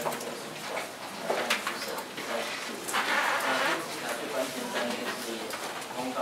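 Indistinct murmur of people talking quietly in a meeting room, with small clicks and knocks and a short rustle about three seconds in.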